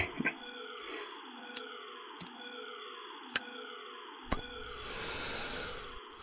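Faint audio-drama background sound effects: a muffled ambient bed with a falling sweep repeating about once a second, four sharp clicks spread through the middle, and a hiss building near the end.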